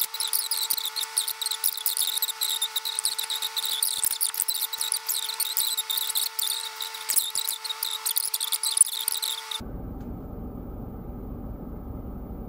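Fast-forwarded playback of a woman's talking, sped up into a rapid, squeaky high-pitched chatter with a steady whine under it. It cuts off suddenly about nine and a half seconds in, leaving a low steady hum.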